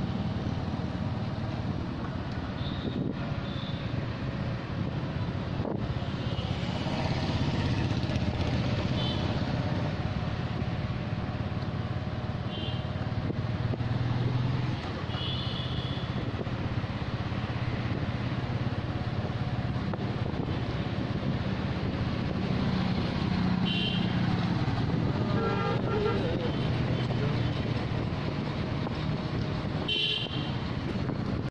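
A motor vehicle's engine runs steadily on the move, with road noise, through city traffic. Short vehicle horn toots sound several times.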